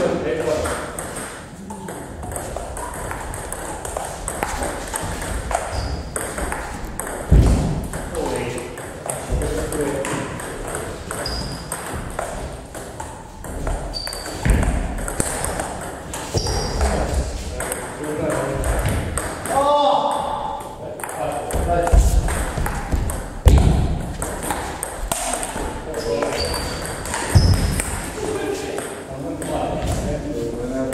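Table tennis ball clicking off the bats and the table in quick, uneven runs during rallies.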